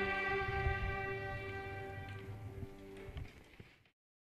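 Student violin ensemble holding a sustained chord that fades gradually away, dying out to silence just before the end.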